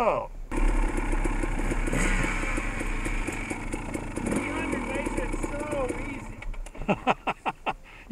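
Dirt bike engine running at low speed, which cuts out about six seconds in and is followed by a run of short separate bursts.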